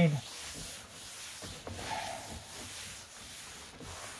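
Cloth rag rubbing tung oil into a bare American chestnut tabletop: a steady scrubbing of cloth over wood.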